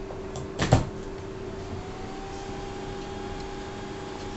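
Cooling fan of a bi-LED projector lens starting up: a whine rises in pitch from about a second and a half in and settles into a steady tone, over a steady low hum, with a single knock shortly before. The lens is resting on its own fan, so the fan is straining.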